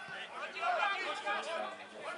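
Several people talking and calling out during a football match.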